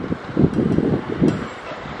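Wind buffeting the microphone in gusts: three strong rumbling bursts over a steady background of wind.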